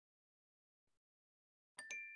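Near silence, then near the end a short electronic two-tone ding: the quiz slide's correct-answer chime as answer B is chosen.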